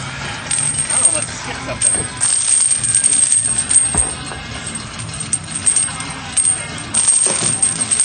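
Heavy steel chains worn as exercise weight clinking and rattling irregularly as the wearer moves, with a few sharper knocks, over background music.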